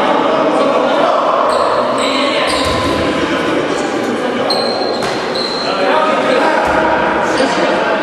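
Sports hall sounds during a basketball game: a basketball bouncing on the court floor amid players' voices, with echo from the hall. A couple of short high squeaks come near the middle.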